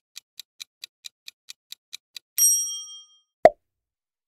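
Countdown timer sound effect: quick clock-like ticks, about four or five a second, stop a little past halfway. A bright ding rings out and fades as time runs out. Near the end a single short pop is the loudest sound.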